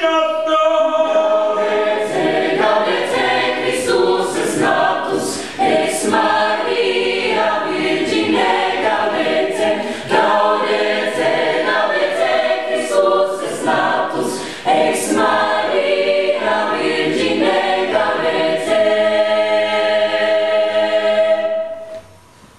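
Mixed choir of men's and women's voices singing a cappella, closing on a long held chord that is cut off together just before the end.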